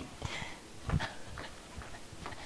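A few faint, scattered knocks and taps of someone moving about and handling tools and supplies, the clearest about a second in.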